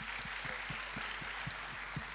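Audience applauding steadily, many hands clapping.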